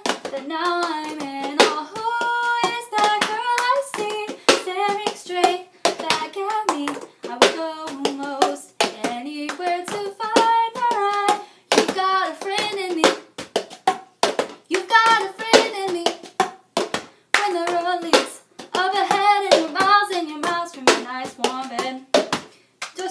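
A woman singing a melody while playing the cup-song rhythm: hand claps and a plastic party cup tapped, flipped and knocked down on a countertop in a repeating pattern.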